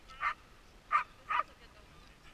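Sled dogs (huskies) in harness giving three short barks, about a second in and just after, the middle one the loudest.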